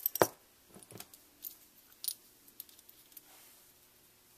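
Small sewing buttons clicking together and tapping on paper as they are handled: one sharp click right at the start, then a few lighter clicks and taps.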